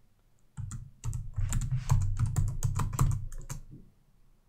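Typing on a computer keyboard: a quick run of keystrokes, entering a password at a terminal prompt and then the Return key. It starts about half a second in and stops just before the end.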